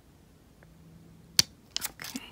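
A tiny gem nail sticker being pried off its plastic backing with metal tweezers: quiet handling, then one sharp click a bit past halfway and two fainter ticks just after, as the stiff sticker comes away.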